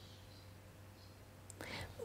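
Near silence with a faint low hum, then a small mouth click and a short breath drawn in near the end, just before speech.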